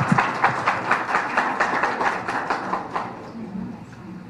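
Audience applauding, many scattered hand claps that die away about three seconds in.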